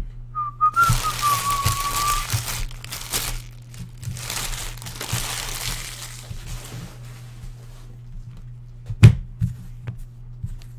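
Foil trading-card pack wrappers crinkling as they are gathered up by hand, in two spells of a few seconds each. A person whistles a short wavering note over the first spell, and a single thump comes near the end.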